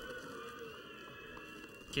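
Faint, steady background noise of a stadium's ambience on a match broadcast.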